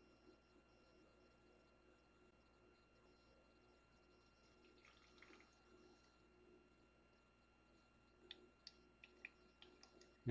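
Near silence with a faint steady hum, and a few faint drips of filtered cooking oil falling from a coffee-filter-lined funnel into a plastic bottle in the last couple of seconds.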